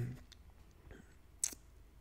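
A drawn-out "um" trailing off, then a quiet pause broken by one short click about a second and a half in.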